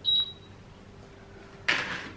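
A single short, high electronic beep at the start, over a faint steady hum; near the end a brief, loud hiss.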